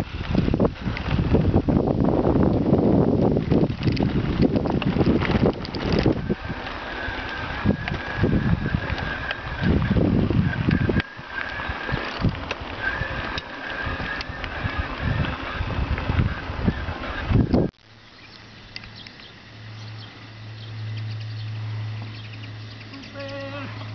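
Wind buffeting the microphone over the rattle and jolts of a mountain bike riding a rough gravel track, with a thin steady high whine partway through. It cuts off suddenly near the end to quieter open-air sound with a low steady hum.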